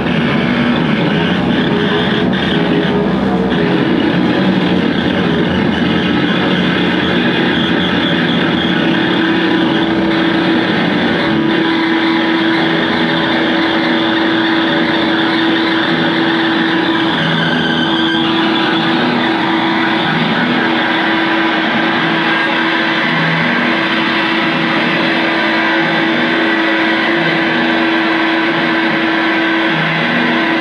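Two electric guitars played through effects pedals and amplifiers as a loud, dense wall of distorted noise. A droning held tone runs through it and breaks off and returns repeatedly from about a third of the way in.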